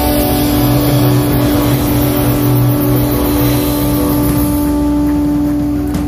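Live blues-rock band: an electric guitar holds one long sustained note over bass guitar and a wash of drum cymbals, which thins out near the end.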